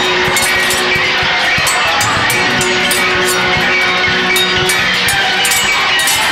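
Film background score with sustained pitched tones, cut through by frequent sharp clicks of sword clashes.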